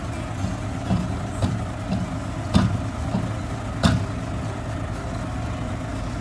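Dump truck's diesel engine running steadily while the truck sits bogged in a wet, muddy hole. Two sharp knocks are heard, about two and a half and four seconds in.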